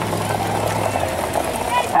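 A vehicle engine runs with a steady low hum that drops out about halfway, over a general outdoor rush of noise. This fits the mobile starting-gate pickup pulling away as the field of pacers is released.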